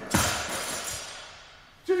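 Heavily loaded deadlift barbell, about 400 kg of plates, crashing down onto the gym floor at the end of a lift: one loud impact just after the start, then the plates and bar rattle and ring, fading over about a second and a half.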